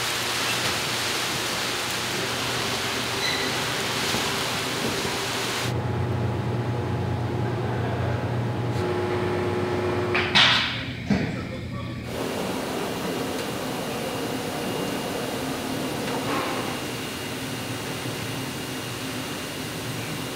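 Factory-hall ambience: a steady hiss of air-handling and machinery. A low hum joins it about six seconds in, there is a brief louder noise around ten seconds in, and over the last part a faint steady high tone sits above the hiss.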